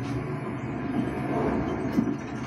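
Film sound effects played back through a Valerion VisionMaster projector's internal speakers: a steady, dense low rumble, with a sharp hit right at the end.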